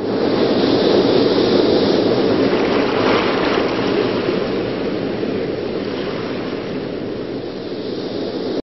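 Sea waves and rushing water, a steady wash that swells in the first second and then slowly eases off.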